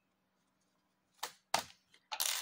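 Two brief soft rustles in quick succession after a silent first second: hands handling a small crocheted piece and its yarn.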